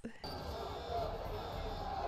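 Film soundtrack of a crowd of prison inmates yelling indistinctly, a dense noisy din with low thuds that cuts in suddenly just after the start.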